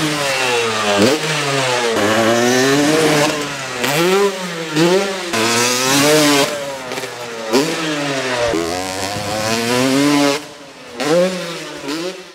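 Yamaha YZ250 two-stroke dirt bike engine revving up and down over and over, its pitch rising and falling about once a second. Near the end it drops away briefly, then revs once more.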